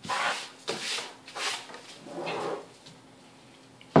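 A slab of handmade soap shoved and slid across a worktop by a gloved hand, making about four short scraping rubs over the first two and a half seconds.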